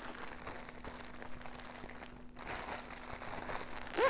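Plastic delivery bag rustling and crinkling faintly as it is handled and pulled open, with a brief lull about two seconds in.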